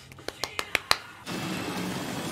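Hands clapping quickly about six times in the first second. A steady rushing noise then sets in and continues.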